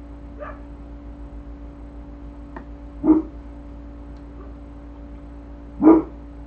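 A dog barking twice, about three seconds apart, with a fainter bark just before, over a steady low hum.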